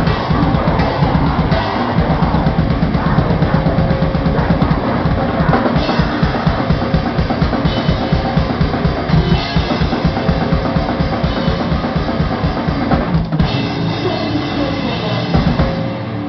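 Death metal band playing live, heard from right behind the drum kit, so the drums are loudest: rapid bass-drum strokes and cymbals over the rest of the band. There is a short break about thirteen seconds in, after which the kick drum drops back.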